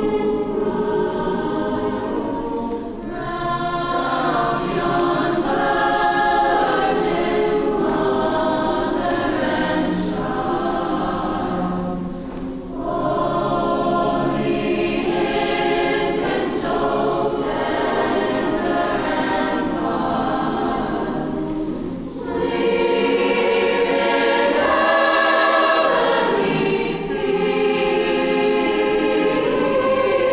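Mixed choir of men's and women's voices singing in sustained phrases, with short breaks between phrases roughly every nine or ten seconds.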